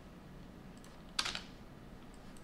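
Computer keyboard typing: a few light keystrokes, with one louder, sharper hit a little after a second in.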